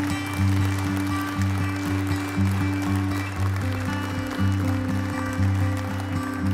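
Gentle acoustic guitar background music with a plucked bass note about once a second, laid over audience applause.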